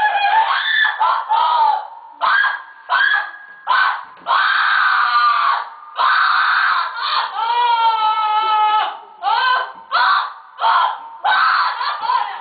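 A woman screaming and wailing in repeated high-pitched cries, some short and some drawn out for a second or more, with brief gaps between them. In this ruqya session the cries are taken as the possessing jinn in torment.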